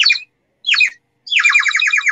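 Small handheld bird whistle blown to imitate birdsong: two short chirps that slide down in pitch, then a fast warbling trill from a little past the middle.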